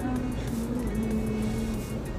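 A woman singing a slow ballad, holding a long note that steps down a little in pitch and ends near the end, over a steady low background hum.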